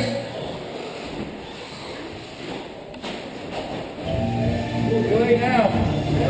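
Quieter murmur of a large indoor hall for about four seconds, then voices grow louder again near the end.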